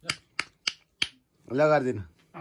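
Four sharp clicks in quick succession over about a second, then a short voice sound near the end.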